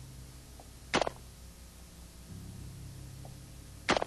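C7 rifle (5.56 mm) fired semi-automatically: two single shots about three seconds apart, each a short sharp crack, over a steady low hum.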